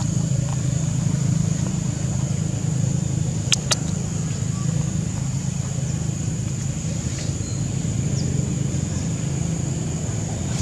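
A steady low motor hum, with a steady high whine above it and two sharp clicks about three and a half seconds in.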